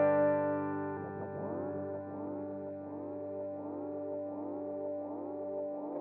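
Clean electric guitar chord ringing out through GarageBand's Sparkling Clean amp with Blue Echo and Heavenly Chorus stompboxes, fading over the first second. From about a second in, a regular chorus wobble sweeps through it about one and a half times a second. A new chord is struck at the very end.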